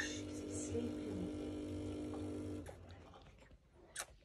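Tommee Tippee Perfect Prep bottle machine humming steadily as it dispenses water into a baby bottle, stopping about two and a half seconds in.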